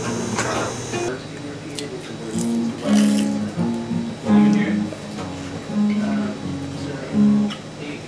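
Acoustic guitar music: a run of held notes, each about half a second long, with short gaps between them.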